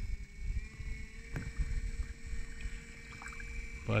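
45 lb Minn Kota 12-volt electric trolling motor running with a steady thin whine over a low wash of water and wind. A single brief knock comes about a second and a half in.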